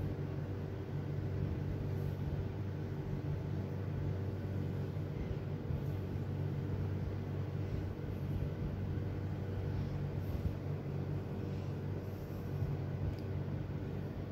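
A steady low mechanical hum with a constant drone, like a motor running.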